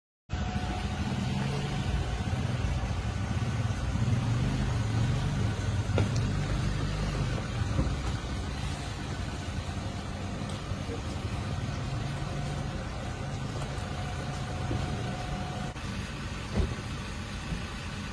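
A vehicle engine idling with a steady low rumble, louder in the first half, with a couple of sharp knocks, one about six seconds in and one near the end.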